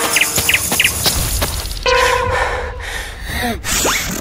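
Forest ambience sound effects: insects chirring and birds chirping, with quick chirps about half a second in and short pitch glides near the end.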